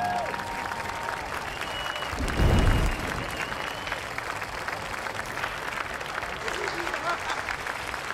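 Audience applauding steadily, with a few whistles near the start and a deep thump about two and a half seconds in.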